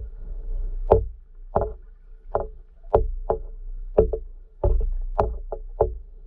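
Irregular sharp clicks heard under water, about two a second, some in quick pairs, over a low rumble and a faint steady hum.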